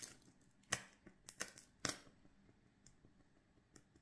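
Faint, sharp crackles and pops, a handful in four seconds with the loudest just before one and two seconds in, from a thin burning wax candle dripping hot wax into a bowl of water.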